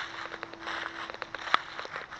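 Footsteps with rustling and crackling, many small clicks and one sharp, louder click about one and a half seconds in. A faint steady hum runs through the first part.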